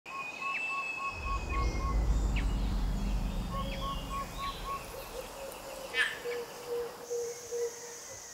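Tropical rainforest ambience with several birds calling: a run of short repeated notes, a long thin whistle and scattered chirps. A low rumble swells about a second in and fades by the middle.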